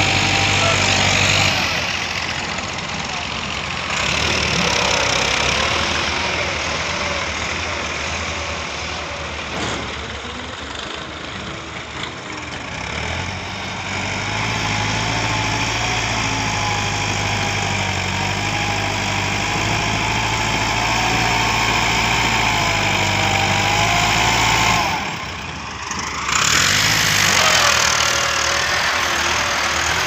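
Tractor diesel engine running steadily under load as it pushes earth with a front blade. The sound breaks off briefly near the end and then picks up again.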